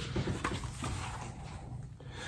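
Paper pages of a hardcover diary being handled and turned: soft rustling with a couple of light taps about half a second in.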